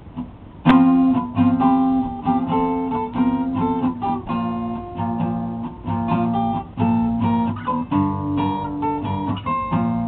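Acoustic guitar strumming chords. It starts with a hard strum under a second in, after a faint click, and keeps a steady rhythm.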